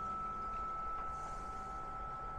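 Steady whirr of a space heater and a heat gun running off a portable power station, with a constant thin high whine over a low hum.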